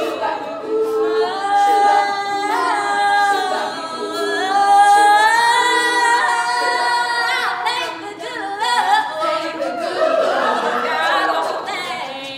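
An all-female a cappella group singing: a solo lead voice holding long high notes over sustained backing harmonies from the rest of the group.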